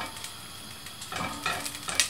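Olive oil with a little water in it crackling and sizzling as it heats in a saucepan, stirred with a silicone spatula; the crackle comes from the water in the hot oil.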